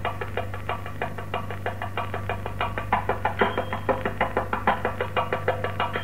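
Thavil drum playing alone in a brisk, steady rhythm of about five strokes a second, the strokes growing stronger about halfway through, over a steady low hum from the old 1948 live recording.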